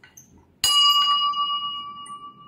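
Small brass bell hanging in a ring-shaped stand, struck about half a second in. It rings on with a clear steady tone that slowly dies away.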